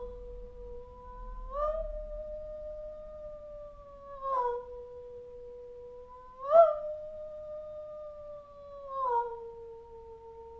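A woman's voice singing long, held notes on a pure hum-like tone. It slides up to a slightly higher note and back down, four glides in all, each pitch held for a couple of seconds. This is the interval sung through with a glissando, the way the teacher intonates the distance between two notes before playing them.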